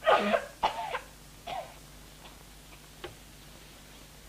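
A girl's coughing fit, the cough of a gravely ill child: a burst of harsh coughs in the first second, another cough about a second and a half in, and fainter ones near three seconds.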